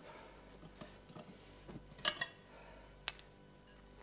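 A few faint clicks and light knocks of a glass bottle being handled, the loudest about two seconds in and a sharp single click about three seconds in.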